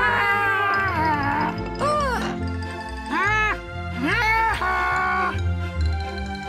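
Bouncy children's cartoon music with a cartoon parrot character's playful voice over it: about four short, squeaky calls that rise and fall in pitch.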